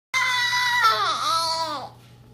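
A baby's high-pitched cry: one steady held note, then a few falling slides in pitch, stopping just before the end.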